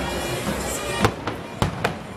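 A run of about four sharp bangs in the second half, the loudest about a second in, over background music and crowd noise.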